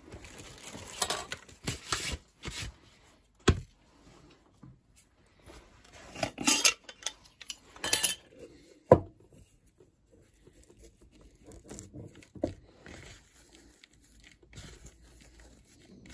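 A metal tobacco tin of flake tobacco being opened and handled, giving several sharp clinks of tin and lid. These are followed by softer rustling as the flakes are rubbed out by hand on a leather mat.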